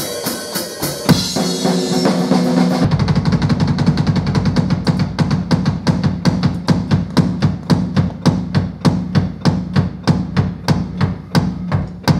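Pearl drum kit played live: cymbal wash and mixed hits for the first few seconds, then a fast, dense roll driven by the bass drum. This settles into rapid, evenly spaced accented strokes.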